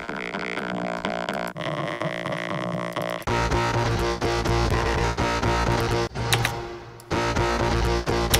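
Distorted, vocal-like electronic bass sound playing back from the DAW: sampled audio tuned in Melodyne and run through iZotope Trash 2 distortion and the VocalSynth 2 vocal effect. It starts thinner and buzzy, then a heavy low end comes in about three seconds in, with brief breaks near the end.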